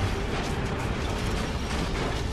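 Mechanical sound effect of an animated logo sting: a dense ratcheting, clicking rattle over a low rumble.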